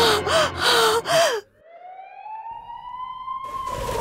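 A woman cries out in pain in short wavering moans for the first second and a half. The sound then cuts off, and a single siren wail slowly rises in pitch and starts to fall near the end: an ambulance siren sound effect.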